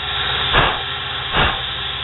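Small homemade lathe's cheap motor running with a steady hum while the tool bit cuts a plastic part, with two short noisy bursts about a second apart.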